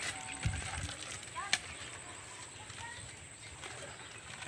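Quiet outdoor background with faint distant voices, and one sharp click about a second and a half in.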